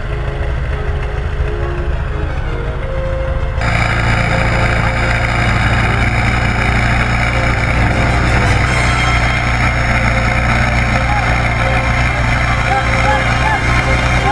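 Background music, then a sudden switch about three and a half seconds in to live sound: an off-road vehicle's engine running steadily, with people's voices over it.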